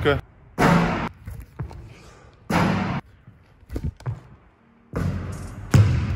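A one-handed three-point attempt with a basketball on a hardwood gym court: a few knocks and thuds of the ball. The loudest sounds are two noisy bursts about a second and two and a half seconds in.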